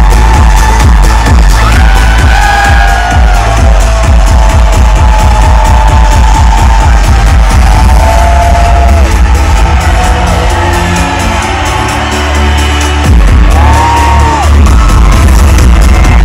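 Loud electronic dance music played live through a festival stage's sound system, with a heavy pounding bass beat; the bass drops out for a moment about three-quarters of the way through, then comes back in.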